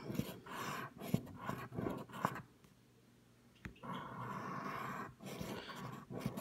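Scratching the coating off a paper scratch-off lottery ticket: a run of short rough scrapes, a pause of about a second, then one longer steady scrape and a few more strokes.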